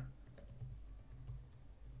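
Faint typing on a computer keyboard: a scatter of light, irregular key clicks.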